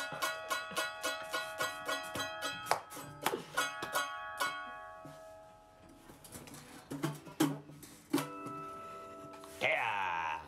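Guitar picking a steady run of plucked notes, about three a second, that rings out and fades about halfway through, followed by a few single plucked notes near the end.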